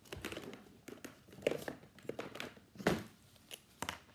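Hands rummaging through craft supplies: crinkly rustling with several sharp plastic clicks and knocks, the loudest about three seconds in, as a liquid glue bottle is fetched.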